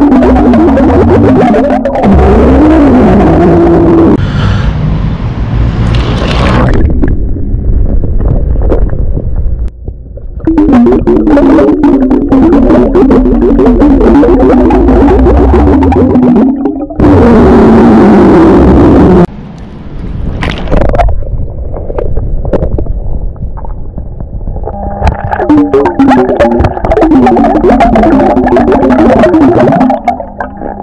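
Long, low burps released underwater, each lasting several seconds with a wavering pitch, separated by stretches of rushing noise.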